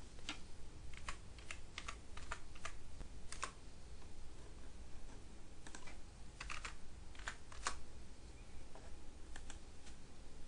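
Computer keyboard typing: irregular key presses in two short flurries, fairly quiet.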